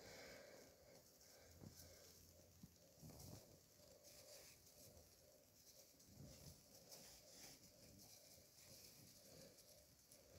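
Near silence, with faint scattered rustling and small taps of a hamster moving over wood-shaving bedding.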